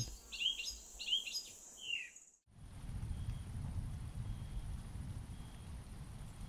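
Several short bird chirps over a steady high hiss from a park nature ambience, cutting off suddenly about two and a half seconds in. Then a low rumbling night ambience with faint, evenly spaced high chirps about once a second.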